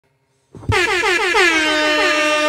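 Air horn sound effect that blasts in suddenly about 0.7 s in with a thump, its pitch swooping down in quick repeated waves before settling into one steady held tone.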